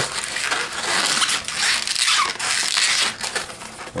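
Latex 260 modelling balloons being twisted and rubbed by hand while a pinch twist is made: a continuous rasping rub of latex, with many small creaks and a few short squeaks.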